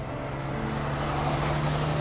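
A heavy truck on large knobby off-road tyres driving past close by: a steady rush of engine and tyre noise that grows slightly louder.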